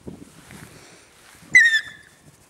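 A Belgian Shepherd Tervuren puppy gives one short, high-pitched yelp about a second and a half in. Soft rustling of the dogs in the grass comes before it.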